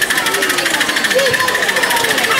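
Miniature live-steam locomotive, a model of LNER 458, pulling away with a passenger train, its exhaust beating in rapid, even chuffs. Voices of onlookers are heard over it.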